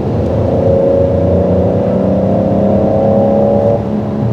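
Peugeot 5008's 1.2-litre three-cylinder petrol engine accelerating under throttle in sport mode, heard inside the cabin: a steady engine note that rises slowly in pitch and stops rising near the end. The driver takes the sound to include engine noise added through the car's speakers.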